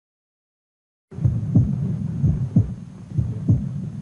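Heartbeat heard through a stethoscope: quick, low, booming thumps, roughly three a second, over a low hum. They start about a second in.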